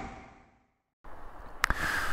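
Low outdoor background noise fades out into dead silence at an edit cut. About a second in, the background noise returns abruptly, with one sharp click a little later.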